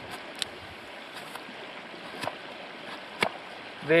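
Work Tuff Gear Campo's SK85 carbon-steel blade shaving curls down a willow stick for a feather stick: about four short, sharp strokes roughly a second apart, over the steady rush of a shallow river.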